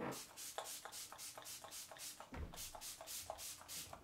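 Quick repeated spritzes of MAC Fix+ setting spray from a pump mist bottle, about four or five short hisses a second, with a soft low bump about halfway through.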